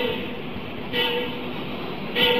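Pause in a recorded speech: steady background hiss, with a brief faint tone and a slight swell about a second in.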